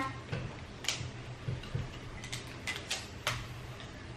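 Light, scattered clicks and taps of small plastic sand-art bottles, tube and funnel being handled on a table, over a low steady hum; a cluster of clicks comes in the second half.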